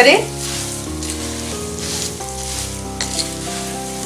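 Wooden spatula stirring poha (flattened rice) with peanuts and chana dal in a hot kadhai, a frying and scraping sound. Background music of held notes changes every half second or so.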